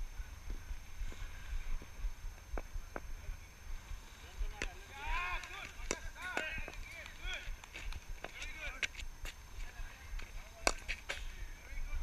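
Scattered sharp knocks of cricket balls striking bats in the training nets. Faint, distant voices of players calling come in the middle, and a constant low rumble of wind buffets the microphone.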